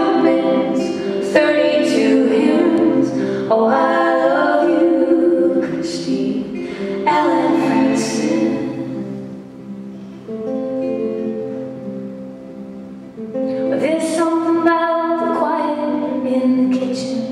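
Live acoustic folk song: acoustic guitars played under a woman singing in phrases, with a quieter stretch of guitar alone partway through.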